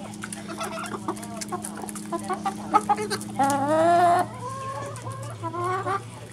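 Backyard hens clucking as they crowd a hand full of mealworms, with a louder drawn-out call about three and a half seconds in and shorter calls after it. Light taps of pecking are scattered throughout, over a steady low hum.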